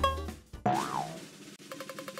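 A transition swoosh with a tone that swoops up and back down about half a second in, then, near the end, a spinning prize wheel starts ticking rapidly, about ten ticks a second, as its pointer runs over the pegs.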